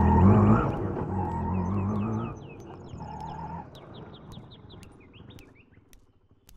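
Small birds chirping in quick, repeated short calls. For the first two seconds they sound over a louder motor vehicle engine whose note rises, and the engine sound stops about two seconds in.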